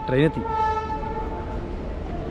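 A train horn sounding one long, steady note that fades out about a second and a half in.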